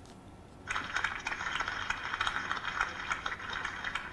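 Audience applause, a dense crackle of many hand claps that starts suddenly under a second in and keeps going, sounding thin as it comes over a videoconference link.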